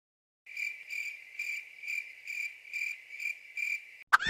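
Crickets chirping: a steady high-pitched trill that pulses about three times a second, starting about half a second in.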